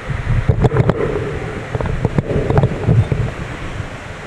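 Microphone handling noise as hands grip and shift stand-mounted microphones: an uneven low rumble with scattered clicks and knocks.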